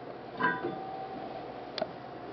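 A light metallic clink about half a second in, ringing briefly, then a faint click near the end: steel parts knocking together as a flex plate is handled on the converter pilot.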